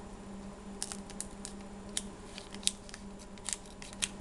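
Irregular sharp snips and crinkles of a trading-card pack's wrapper being cut and opened, a dozen or so crisp clicks spread unevenly over a steady low hum.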